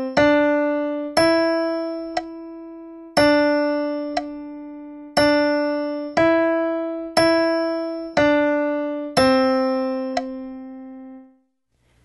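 Digital piano playing a short melodic-dictation exercise in C major: single notes on C, D and E, each one or two beats long at about a beat per second. It ends on a held middle C that dies away near the end.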